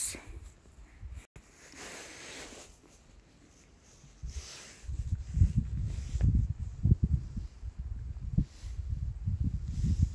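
Low, irregular rumble of wind buffeting a handheld microphone, coming in gusts from about four seconds in after a quieter start.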